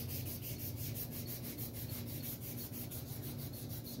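Fine 1000-grit abrasive paper with oil rubbed on a rusty sword pommel, a quiet steady scratchy rubbing as the surface rust is scoured off.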